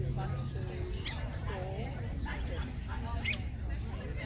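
Indistinct talking of people nearby over a steady low hum, with a couple of short high squeaks, one about a second in and one near the end.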